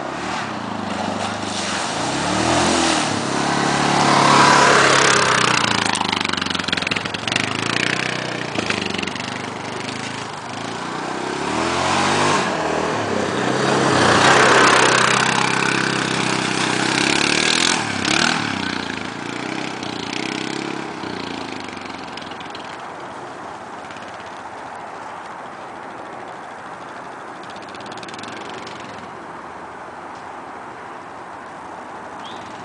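ATV (quad bike) engine revving up and down as it rides a muddy trail, its pitch rising and falling with the throttle. It is loudest twice, about 4 seconds in and again around 14 seconds, then fades as the quad rides away.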